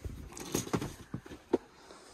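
Small knocks and rattles of household items being picked up and moved, a few separate sharp taps, the loudest about one and a half seconds in.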